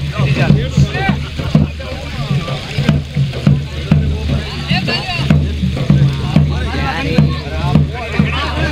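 Dhol drum beating a steady rhythm, about two strokes a second, with villagers' voices chanting and singing over it during a river puja.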